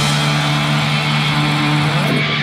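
Heavy metal band's distorted electric guitars and bass holding one chord that rings on steadily after the drums stop at the start.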